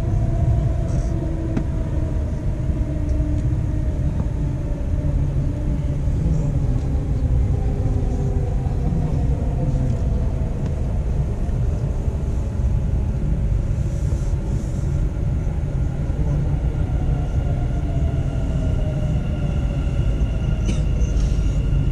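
Electric Dubai Metro train heard from inside the carriage: a steady low rumble of wheels on the track, with a motor whine that slowly falls in pitch in the second half as the train slows for the next station.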